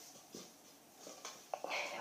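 Red plastic party cups being set upright on carpet to rebuild a stacking pyramid: a few faint light taps, most of them in the second half.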